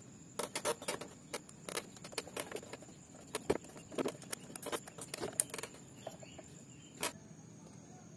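Small, irregular metal clicks and ticks of a screwdriver working loose the screws that hold the idle air control valve (IACV) on a Honda Beat's throttle body, with the engine off.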